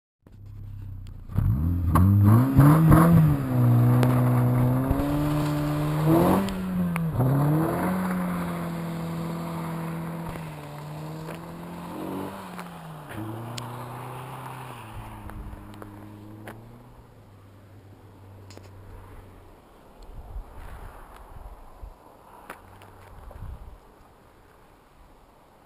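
2009 Honda Civic with a K&N intake and Magnaflow axle-back exhaust, accelerating hard away from the car's standstill start. The engine note climbs and then drops at upshifts about six and twelve seconds in. It fades steadily as the car drives off into the distance, until it is faint by the last few seconds.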